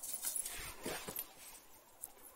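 Rustling through forest undergrowth as an Irish setter moves along, with a short sound from the dog about a second in.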